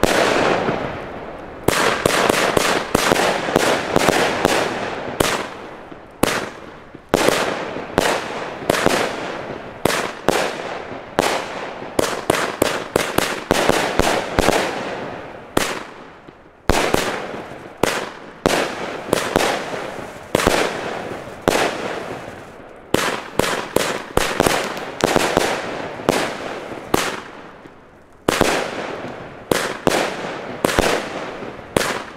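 Argento Cobalt firework battery firing: a rapid string of shots and aerial bursts, about three bangs a second, each with a short echoing tail. The run pauses briefly three times before picking up again.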